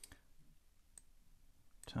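Two faint computer mouse clicks about a second apart; otherwise near quiet.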